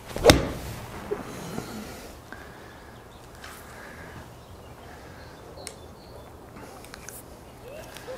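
A Cleveland RTX4 56-degree wedge strikes a golf ball off a hitting mat with one sharp click a moment in. A fainter knock follows about a second later, then only a low room hum.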